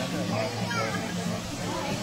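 Children's voices and people talking, with an acoustic guitar playing steady low notes underneath.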